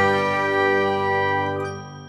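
Channel intro jingle ending on a held chord of several steady tones, which fades away near the end.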